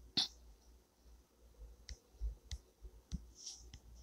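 Faint, sharp clicks: one louder click just after the start, then about five quieter ones over the last two seconds, from fingertip taps on a phone touchscreen.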